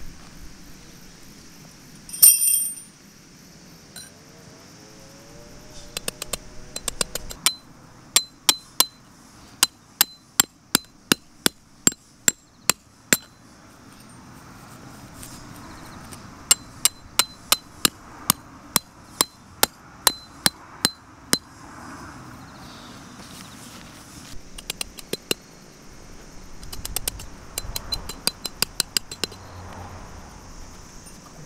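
Tent pegs being hammered into the ground: sharp, ringing strikes in runs of about two a second, each run a few seconds long, with pauses between pegs.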